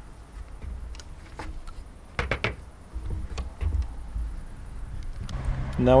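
A low rumble with a few soft knocks, and a brief faint mumble of a man's voice about two seconds in.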